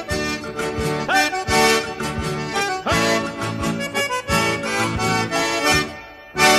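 Accordion-led gaúcho bugio music playing an instrumental passage, with low bass notes and a regular beat under the accordion. It breaks off shortly before the end.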